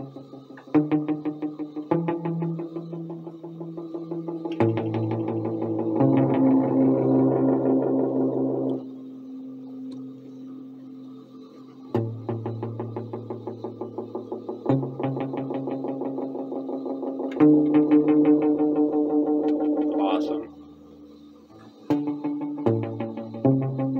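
Electric guitar played through an Elk EM-4 tape echo machine: a few strummed chords, each followed by a fast train of evenly spaced echo repeats, with a short rising tone near the end.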